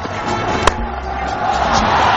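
Cricket stadium crowd noise that swells toward the end, with one sharp crack of bat on ball about two-thirds of a second in.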